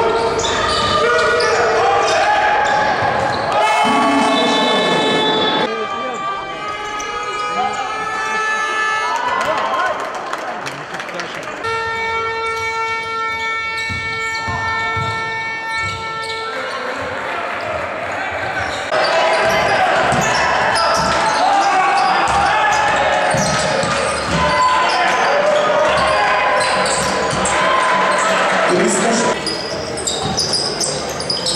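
Basketball game sound in an echoing arena: ball bouncing on the hardwood court with players' and spectators' voices. A steady horn sounds briefly about four seconds in and again for about five seconds near the middle.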